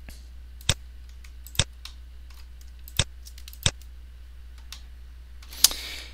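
Computer mouse clicking: five sharp single clicks at uneven intervals over a low steady hum.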